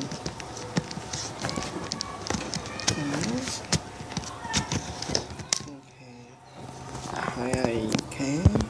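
Many small clicks and knocks of close handling, with a few brief spoken sounds among them; the clicking thins out and the level drops briefly about six seconds in.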